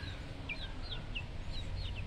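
Newly hatched Muscovy ducklings peeping: a run of short, high, falling peeps, a few a second, over a low rumble.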